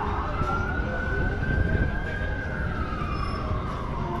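Emergency vehicle siren on its long wail: one tone that climbs, holds high, then slowly falls away over the last second or two, over steady low traffic rumble.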